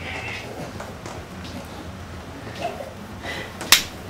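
A swinging plastic water bottle on a string striking a player, heard as one sharp smack near the end over quiet room sound.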